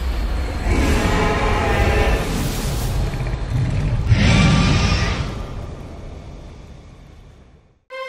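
Cinematic logo sting of whooshing noise over a deep rumble, swelling to its loudest about four seconds in as the logo appears, then fading out slowly.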